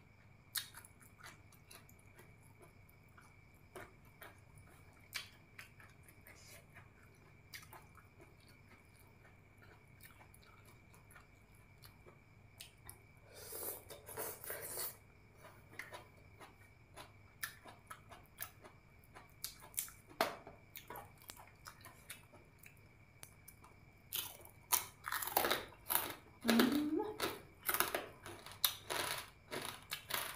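Close-miked eating: chewing and biting with crisp crunches, typical of crispy pork rinds eaten with rice noodles. Sparse soft clicks at first, then louder bursts of crunching about halfway and again through the last few seconds.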